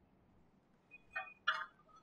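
Two brief, faint squeaks a little over a second in, from a marker pen being drawn across a whiteboard.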